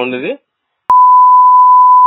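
A loud, steady, single-pitched censor bleep that cuts in abruptly with a click about a second in, after a moment of silence, and holds one unchanging tone. It is the kind of bleep dubbed over a word in the recorded call to blank it out.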